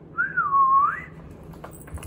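A person whistling one short note, under a second long, that wavers, dips and then slides up at the end. It is the go signal in a pop-up game, followed by a few faint clicks near the end.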